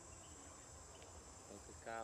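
Faint, steady high-pitched chirring of insects in the background.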